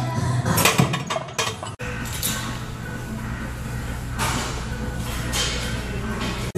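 Loaded barbell racked back onto the bench press uprights: a few metal clanks and clinks in the first second and a half. After that comes a steady low room hum with a few soft rushes of noise.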